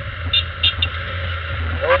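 Honda motorcycle engine running steadily at city cruising speed, with a low hum under the rush of wind and road noise on the camera microphone.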